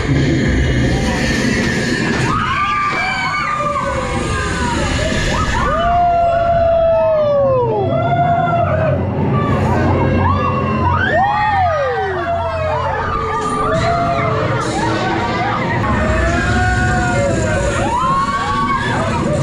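Several riders screaming on a drop-tower ride: many overlapping screams that rise and fall in pitch, over a steady low noise from the ride.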